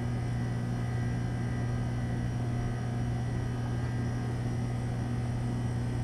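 Steady low hum with a fainter higher overtone, unchanging throughout; no distinct events stand out above it.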